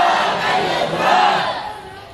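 A crowd of protest marchers shouting a slogan together, many voices at once, the shout dying away near the end.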